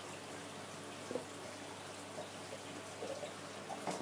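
Faint, steady trickle and hiss of water circulating through an aquarium filtration system, with one small click about a second in.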